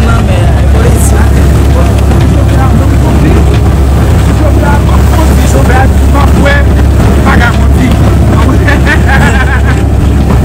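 Boat under way at sea: a steady low rumble of the engine and wind buffeting the microphone, with voices talking over it.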